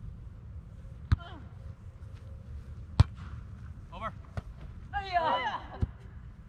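A volleyball being struck by hands in a rally: four sharp slaps, one every one and a half to two seconds, the one about three seconds in the loudest. Players call out briefly between the later hits.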